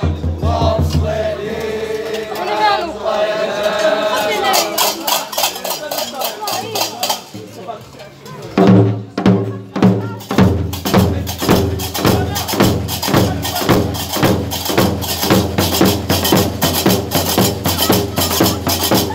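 Gnawa percussion: voices chant for the first few seconds, then a tbel drum comes in with heavy strokes about eight seconds in. From about ten seconds a fast, steady rhythm of iron qraqeb castanets clacking together with the drum beats takes over.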